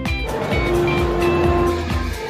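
Background music with a steady bass-drum beat and sustained tones; a rushing, noisy swell rises about half a second in and fades near the end.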